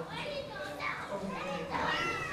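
Faint voices in a room, high-pitched like children's chatter.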